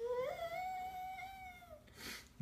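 A toddler's long, whiny hum. One drawn-out note rises at the start, holds for most of two seconds, and drops away near the end.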